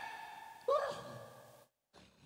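The echo of a shout fades away, and about two-thirds of a second in a man lets out one short, voiced sigh. The sound then cuts out completely for a moment near the end.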